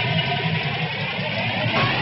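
A steady, engine-like rushing sound effect under a graphics sequence, with a high whine that dips slowly and then rises again.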